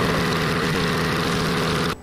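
The money-printer "brrr" meme sound effect: a steady, loud mechanical buzz with a fast rattling pulse, cutting off abruptly near the end.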